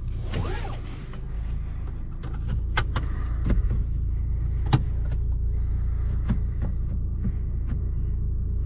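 Fiat 500 cabin sound while driving slowly over cobblestones: a steady low rumble with scattered sharp knocks and rattles, and a brief squeak just after the start.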